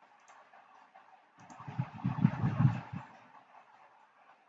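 Computer mouse clicking a few times. In the middle a louder burst of low, rough noise lasts about a second and a half.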